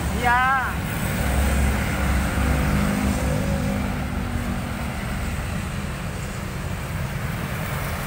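Street traffic: a motor vehicle's engine passing close by, loudest in the first half, over a steady low rumble of road traffic.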